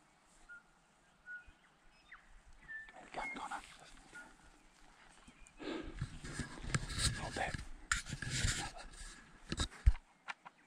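Heavy panting with rustling through long grass, loudest in the second half. There are a few short bird whistles in the first three seconds, and a sharp knock just before the end.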